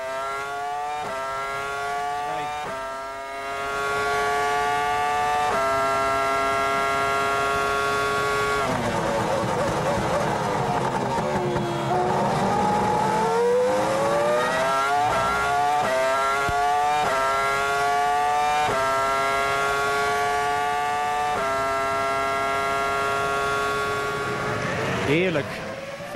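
Ferrari V10 Formula 1 engine heard from the onboard camera, screaming up through the gears with quick upshifts, each marked by a sharp drop in pitch. Around the middle the pitch falls away as the car brakes and downshifts for a corner, then it climbs again through a run of upshifts.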